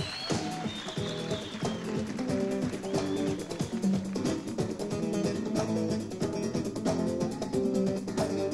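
Live jazz-fusion music: a six-string electric bass plays a busy line of short notes over rapid percussion.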